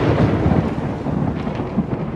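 A deep, noisy rumble slowly dying away, the tail of a sudden loud boom.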